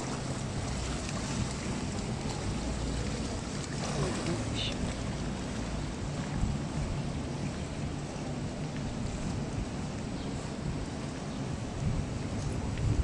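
Steady indoor swimming-pool ambience: water lapping and sloshing along the pool edge over a low, even rumble.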